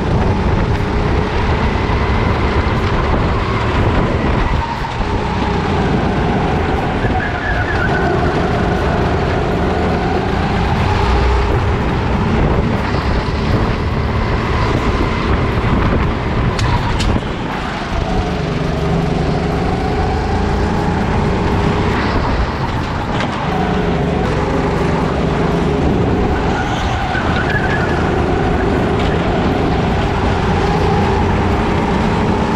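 Onboard sound of a Sodi RT8 rental kart's engine running hard. Its pitch rises as it speeds up and falls as it slows for corners, with short drops when the throttle is lifted, about five and eighteen seconds in.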